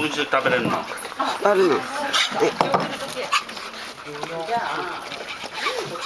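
People talking to a golden retriever, with the dog's own sounds under the voices as it noses at a cake in a ceramic bowl, and a few sharp clicks in the middle.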